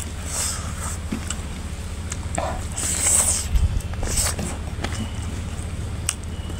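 Close-up eating sounds: chewing, wet mouth clicks and a few short hissy bursts as rice and chicken curry are eaten by hand off a banana leaf, over a steady low hum.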